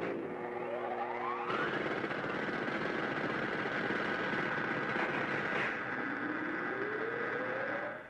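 Electronic synthesizer sound effects. A held cluster of steady tones and a rising glide give way to a dense buzzing whir with a steady high tone, and a second slow rising glide climbs near the end.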